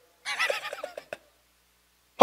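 A short burst of laughter, a quick run of 'ha' pulses under a second long that fades out, then a single small click.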